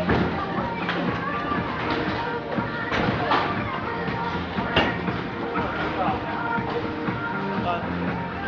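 Background music playing over indistinct voices, with a few sharp knocks about one, three and five seconds in.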